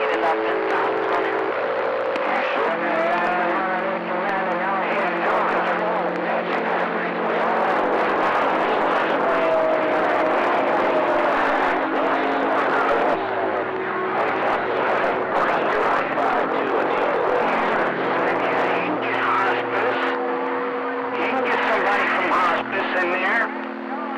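CB radio receiver on channel 28 picking up distant skip: hiss with several overlapping steady whistling tones that change pitch every second or two, and garbled, unintelligible voices beneath.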